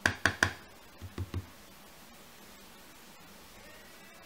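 A round blending brush dabbed onto an ink pad to load it with ink: three quick taps, then three softer ones about a second in.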